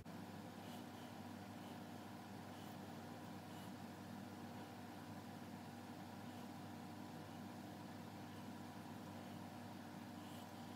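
Faint, steady room hum made up of several steady tones, with soft faint ticks about once a second.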